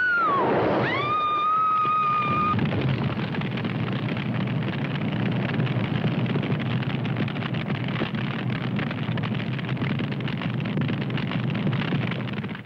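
A woman screams: one long high cry that dips and then holds for about two and a half seconds. It gives way to the steady rushing noise of a large fire burning through wreckage, which cuts off just after the end.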